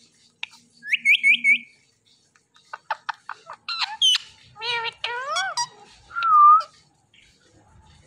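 Indian ringneck parakeets calling: a quick run of four rising whistled chirps about a second in, then a string of clicks, short high calls and voice-like gliding chatter. A long level whistle a little after six seconds is the loudest sound.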